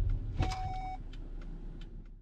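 Car cabin road and drivetrain rumble fading as the car brakes to a standstill. A click and a short electronic beep come about half a second in.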